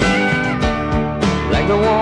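Instrumental stretch of a rock ballad: a band with guitars playing over a steady drum beat.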